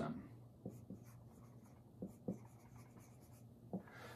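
Dry-erase marker writing on a whiteboard: a few faint, short strokes spaced unevenly as words are written out.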